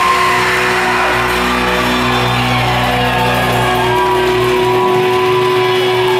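At the start the full band stops. The electric guitars go on ringing through their amplifiers in long, steady held tones, one note held unchanged throughout, and a crowd shouts over them.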